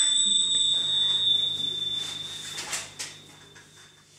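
A small bell, struck once, rings on one high note and dies away over about three seconds, with a faint low hum underneath and two soft knocks as it fades.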